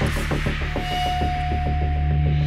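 Tense background music: a low droning hum under a fast throbbing pulse, about seven beats a second, with a held high note joining a little under a second in.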